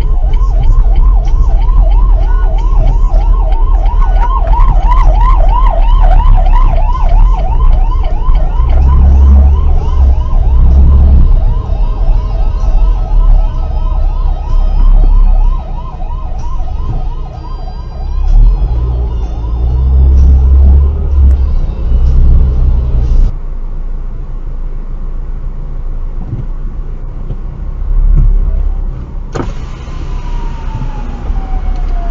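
Ambulance siren in a fast rising-and-falling warble, heard from inside a following car over a steady low road and engine rumble; the siren fades out about halfway through.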